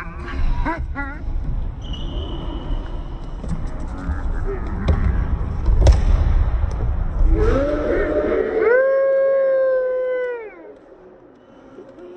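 Indoor futsal game: a low rumble with scattered knocks, a sharp crack of the ball being kicked about six seconds in, then one long shouted cheer held for about two seconds and falling off at the end.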